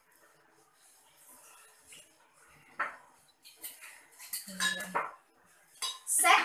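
Metal jigger and cocktail shaker clinking, with bottles knocking on the table, as rum is measured and poured: a few sharp clinks about three to five seconds in, one with a short ringing tone.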